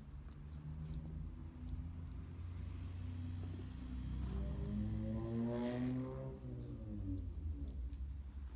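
Aircraft passing overhead: a low droning rumble that swells to its loudest about five to six seconds in, with a whine that glides up and then falls away as it passes, then eases off.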